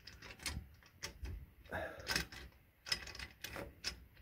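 Irregular metallic clicks and knocks from a sliding door's metal hanger bracket and latch being worked by hand, as the door is jiggled to free it from its overhead rail.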